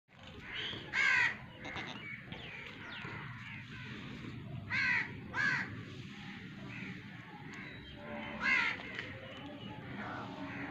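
Crows cawing in short, harsh calls: one about a second in, two close together around five seconds, and one past eight seconds, with fainter caws in between. A steady low background noise runs underneath.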